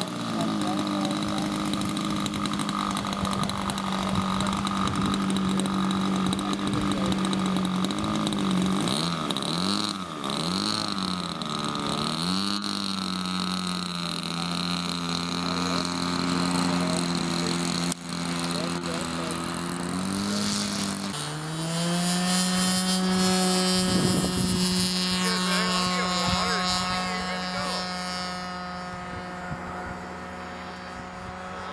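RC model airplane's small engine and propeller running, its pitch wavering up and down several times around ten seconds in as the throttle is worked. About twenty-one seconds in the note rises and grows louder, holding steady under full throttle for the takeoff, then fades slightly near the end as the plane flies away.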